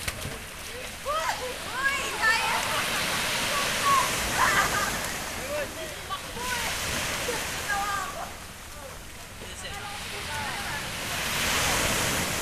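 Several people shouting and calling out in short, wordless cries, over the steady wash of small waves breaking on the shore.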